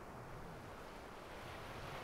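Ocean surf washing onto a sandy beach, faint and steady, growing a little louder near the end, with some wind on the microphone.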